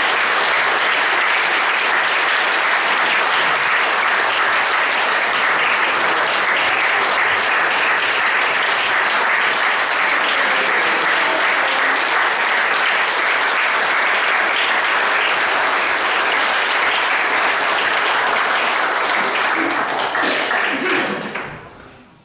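A roomful of people applauding steadily, the clapping dying away near the end.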